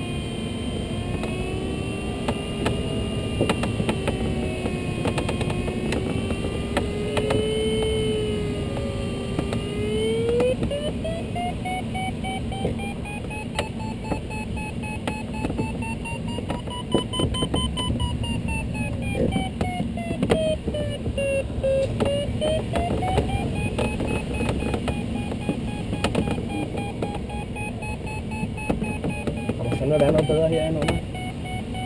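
Glider's audio variometer: a steady tone for about ten seconds, then rapid beeping whose pitch slowly rises, falls and rises again, signalling the glider climbing in a thermal with the lift strengthening and weakening. Steady airflow noise runs underneath in the Duo Discus cockpit.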